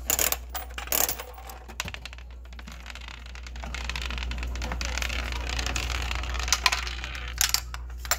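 Spiral gumball machine dispensing. Sharp clicks from the coin mechanism come in the first second. Then a gumball rolls down the spiral track for a few seconds, with a couple of clicks near the end as it reaches the chute at the bottom.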